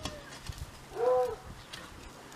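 A short animal call about a second in, one pitched note that rises and falls, over a few faint dull thuds.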